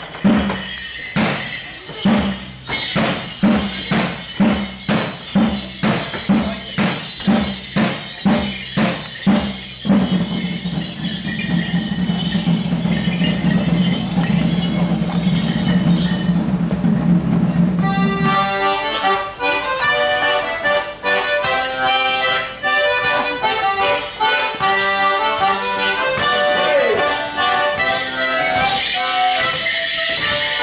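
A drum beats steadily about twice a second, then holds a sustained low rumble. From about eighteen seconds in, a band of accordions strikes up a Morris dance tune. Near the end, jingling joins the tune as the dancers set off.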